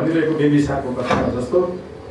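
Only speech: a man talking in Nepali.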